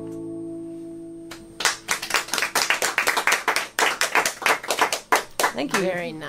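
The last chord of an acoustic guitar rings and fades out, then a small audience claps for about four seconds.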